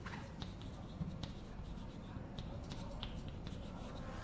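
Chalk on a blackboard while writing: a string of light, irregular taps and short scratches over a steady background hiss.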